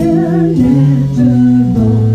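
A female vocalist singing with vibrato over a live soul band, with sustained bass notes underneath.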